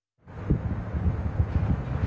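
Gusty wind buffeting an outdoor microphone: a low, uneven rumble with irregular thumps. It fades in just after the start, following a moment of dead air.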